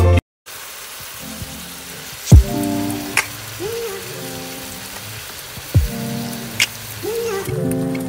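Soft background music with a slow beat, over a steady sizzling hiss from vegetables frying in a pot under a whole raw chicken. The hiss drops away near the end.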